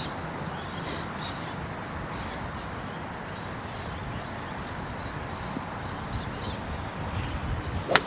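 A golf club striking a ball from the fairway: one sharp crack near the end, after several seconds of steady outdoor background.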